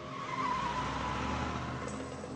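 Car pulling away fast, its tyres squealing briefly about half a second in over the engine's low sound.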